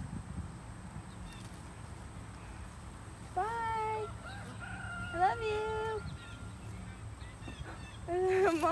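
A rooster crowing once: one drawn-out crow in three held parts, a little under halfway in, over a faint steady low outdoor rumble.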